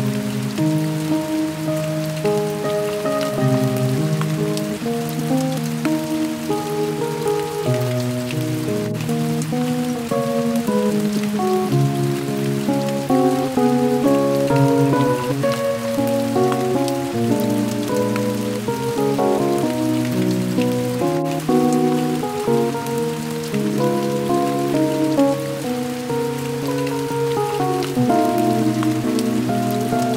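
Instrumental music of held notes that change step by step, without singing, over an even hiss.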